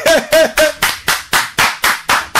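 Hands clapping in a steady rhythm, about four claps a second, with a voice heard over the first half-second.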